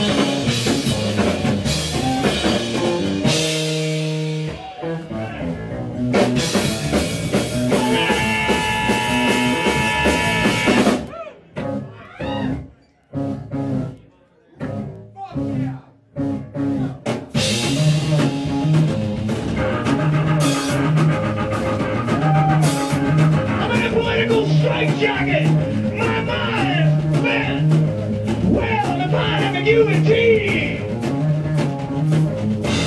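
Live rock trio playing: electric bass guitar, electric organ and drum kit. About 11 seconds in, the band breaks into stop-start hits with near-silent gaps between them, then comes back in with a steady, driving groove.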